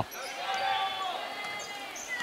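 Faint gymnasium sound of a high-school basketball game in play: a murmuring crowd and players moving on the hardwood court as the ball is brought up the floor.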